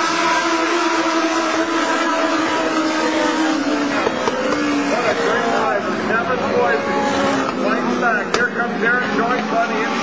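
A pack of Legends race cars, with motorcycle engines, running around a short oval: several engines overlap at once, their pitches rising and falling as cars pass and go through the turns. A single sharp click about eight seconds in.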